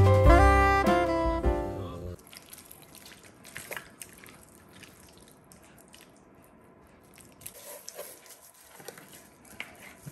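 Jazz music with saxophone stops about two seconds in. It is followed by faint, scattered soft wet pats and smacks of bare hands spreading mustard and spice rub over a rack of ribs on a wooden cutting board.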